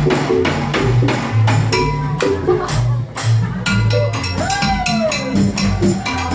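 Live band music: steady percussion strikes on hand drums and a pole-mounted percussion rig over a bass line. About four and a half seconds in, a pitched note bends up and slides back down.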